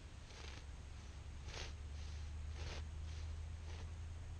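Vintage lightning-pattern hay knife pushed down into a rotten round bale of hay: four short cutting strokes, about one a second.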